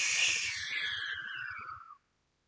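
A man making a long whooshing hiss with his mouth to imitate the wind blowing. It falls in pitch and fades out just before the end.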